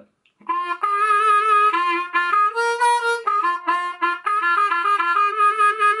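Diatonic harmonica played in a short bluesy phrase of several notes, the pitch stepping up and down, showing the minor third (the blue note) of the lower octave.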